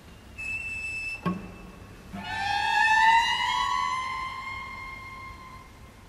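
Two cellos playing contemporary music. A thin, high held note is cut off by a sharp attack just over a second in, then a high bowed note slides slowly upward, swells and fades away near the end.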